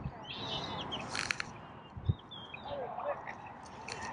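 Birds chirping around the water, in short high calls, with a couple of sharp clicks a little after a second in and a brief low thump about two seconds in.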